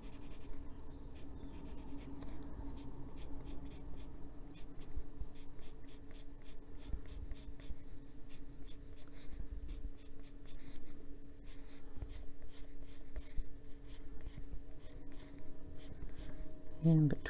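Wax-based coloured pencil (Prismacolor Black Raspberry) scratching across paper in quick, irregular short strokes as it shades colour outward, with a faint steady hum underneath.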